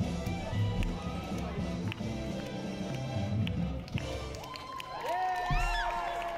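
Fast swing jazz recording for Lindy Hop dancers, with the rhythm section driving a steady beat. From about four and a half seconds in, the band holds long notes at several pitches as the song comes to its end.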